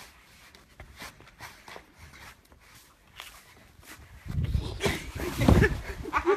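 A person moving about: light footsteps and scuffs, which get much louder and busier about four seconds in.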